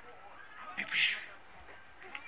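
A six-month-old baby's short, breathy, high-pitched excited squeal about a second in.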